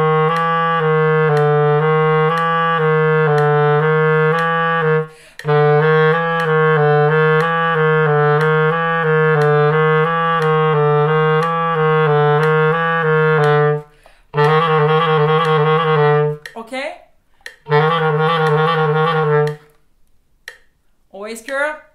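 Clarinet in its low register playing a fast repeated three-note pinky-finger exercise (E, F, G flat) over a steady metronome tick. The runs break off briefly three times, the last two runs are faster, and the playing stops just before the end.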